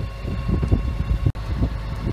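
Sailing yacht's engine running while motoring under way, a steady low rumble with wind buffeting the microphone.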